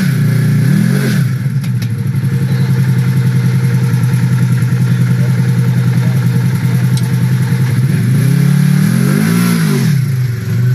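Polaris RZR 4 1000 side-by-side's twin-cylinder engine running under load while crawling through a rock slot. It gives a steady, fast pulsing throb, with the revs rising and falling about a second in and again near the end.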